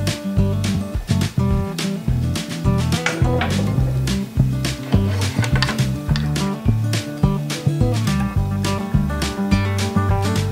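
Background instrumental music with a steady beat.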